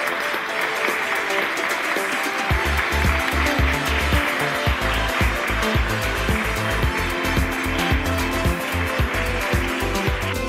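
An audience applauding over background music; a steady bass beat comes into the music about two and a half seconds in, and the applause fades out at the end.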